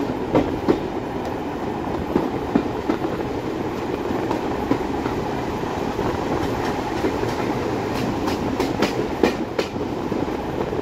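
Railway passenger carriage running along the track: a steady rolling rumble of wheels on rail, with sharp wheel clicks scattered through it and several in quick succession near the end.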